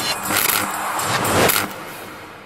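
Outro jingle sound effects: noisy whooshing sweeps about half a second in and again, louder, about one and a half seconds in, then a steady fade-out.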